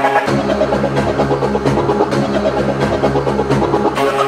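Early-1990s hardcore rave track: just after the start, a deep low drone comes in under the held synth tones and the beat, and it drops out again at the end.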